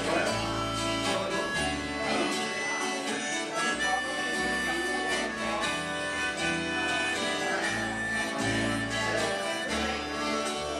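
Instrumental passage of an acoustic song: a harmonica plays the melody over a strummed acoustic guitar, with an acoustic bass guitar holding low notes that change every second or so.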